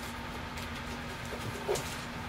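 Steady hum of a home furnace running, with a couple of faint knocks from records being handled near the end.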